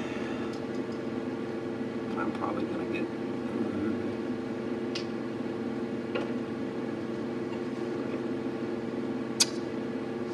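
Steady low hum of the meeting room's background, with a few short sharp clicks from a laptop's touchpad as files are opened, the loudest click near the end.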